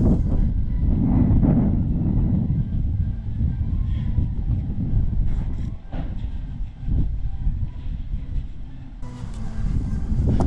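Wind rumbling on the microphone: a loud, fluctuating low rumble with little high sound in it, and two light knocks about six and seven seconds in.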